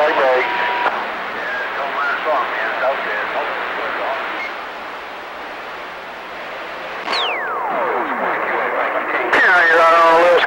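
CB radio receiver on a crowded skip channel: steady static with faint, garbled voices of distant stations underneath. About seven seconds in a whistle slides steeply down from high to low, and near the end a clear voice comes through.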